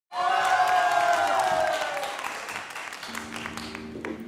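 Intro sound effect or jingle: a loud pitched tone sliding slightly downward over a scatter of sharp clicks, fading over about two seconds. About three seconds in, a quieter steady held chord begins.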